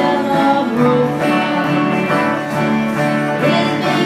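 Live country band playing a honky-tonk song on acoustic and electric guitars, with a woman's singing voice.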